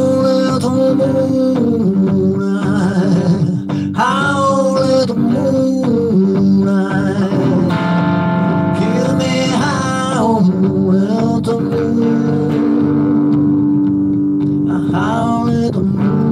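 Electric blues played live on a hollow-body electric guitar over a looped backing, the lead line full of bent, wavering sustained notes above steady low chords.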